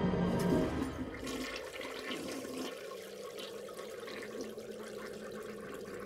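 Water rushing and gurgling like a toilet flushing, loudest in the first second and then settling into a steady wash, with a low steady hum underneath.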